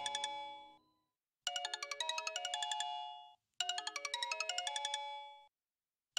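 Mobile phone ringtone for an incoming call: a short melody of quick chiming notes played in phrases about two seconds long, repeating with brief silent gaps between them.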